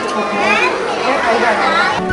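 Many children's voices chattering and calling out at once, overlapping so that no words stand out.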